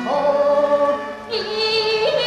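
A woman singing a Yue opera aria in the male (xiaosheng) role: a long held note that slides between pitches, a brief drop a little after a second in, then the next phrase begins.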